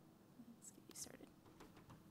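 Near silence: room tone with faint whispering about a second in.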